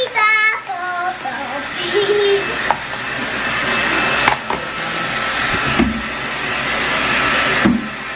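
Handheld hair dryer running steadily, drying a child's wet hair, an even rush of air throughout; a young girl sings a few notes at the start.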